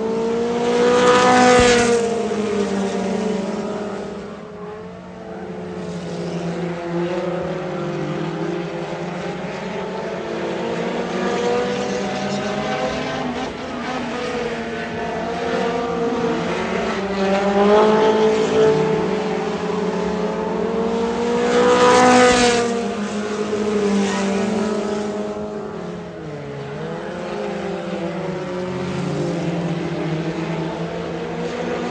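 A small field of stock cars racing on a dirt oval, their engines running hard under throttle. The sound swells loudest as the pack passes close, about two seconds in and again about twenty-two seconds in, then fades as they go around the far end.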